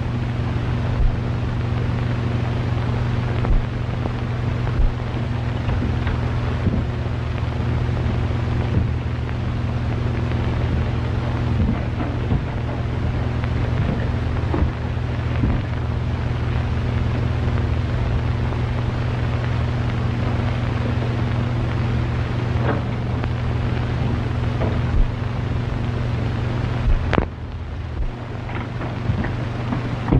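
Steady low electrical hum and hiss of an old optical film soundtrack, with scattered crackles and clicks. A sharp click near the end, after which the hum drops away.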